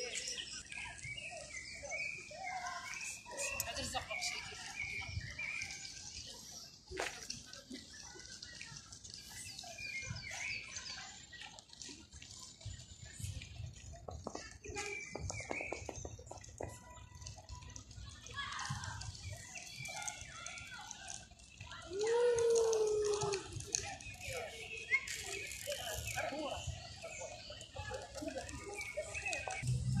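Outdoor ambience of a public garden: people's voices in the background, children's among them, with birds chirping throughout. A louder call with falling pitch comes about twenty-two seconds in.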